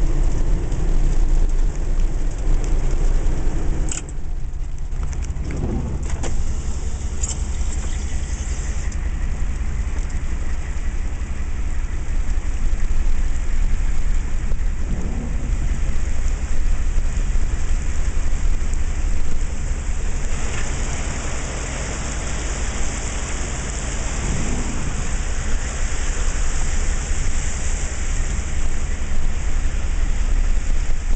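Rain and rushing flash-flood water heard from a vehicle, over a steady low rumble. The hiss grows louder about two-thirds of the way in.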